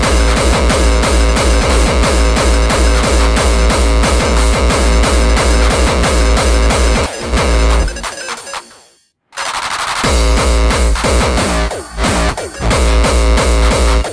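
Hardcore electronic dance music from a DJ set: a fast, heavy kick drum under dense synth layers. About eight seconds in the kick drops out and the music fades to a moment of silence, then the beat returns a second later.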